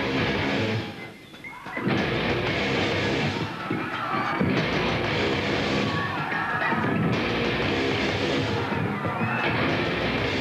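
Live rock band playing loud, heavily distorted electric guitars over drums. The music drops away briefly about a second in, then comes back at full volume.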